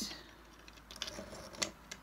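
A few faint light clicks and taps, the sharpest about a second and a half in, as pieces of dry, brittle coral are handled.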